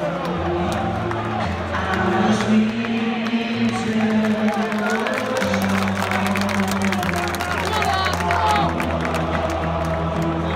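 A large football stadium crowd singing in long held notes, with music and cheering mixed in.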